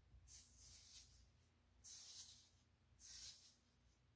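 Faint scraping of a razor blade drawn down the scalp through short stubble, three separate strokes of about half a second each.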